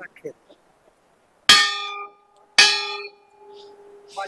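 A hanging temple bell struck twice by hand, about a second apart. Each strike rings out and fades, and the low hum of the second lingers.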